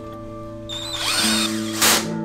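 Cordless electric screwdriver briefly whirring as it drives a disc-brake rotor bolt into the hub, with a second, louder short burst just before the end, over background music.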